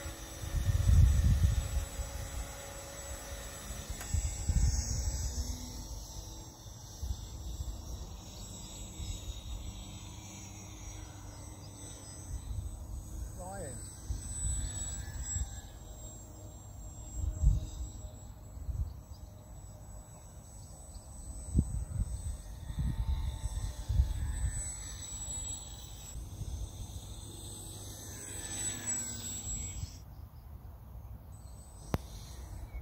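Wind buffeting a microphone in an open field, in irregular low gusts, with a faint steady high tone throughout.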